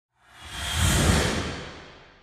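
Cinematic whoosh sound effect for a logo reveal. A single swell of rushing noise with a deep rumble underneath builds over about half a second, then fades away.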